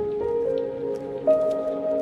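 Epic orchestral music. Held notes enter louder over a sustained chord, and the melody steps upward twice.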